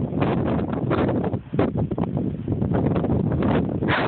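Wind buffeting a phone's microphone: a loud, uneven rush with many short gusts, dipping briefly about one and a half seconds in.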